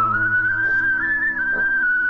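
A high whistled melody in long held notes that step slightly in pitch, over sustained orchestral chords. It follows on from a sung crooner ballad.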